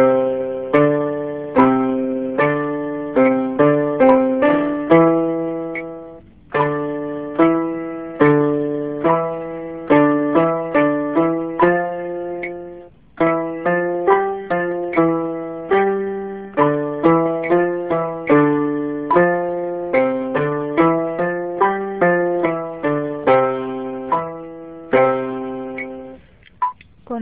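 Electronic keyboard with a piano voice playing a finger-dexterity exercise with both hands: short notes stepping up and down at a steady moderate pace. There are two brief pauses, about a quarter and half way through.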